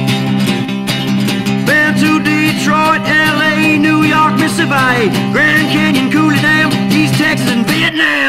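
Acoustic guitar instrumental break in a country-blues song: picked lead notes, some bent in pitch, over a steady ringing low-string drone and a driving strummed rhythm.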